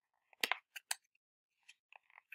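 Paper pages of a hardcover picture book sticking together and being picked apart by the fingers, giving a few sharp crackling clicks around half a second to a second in and fainter ticks near the end.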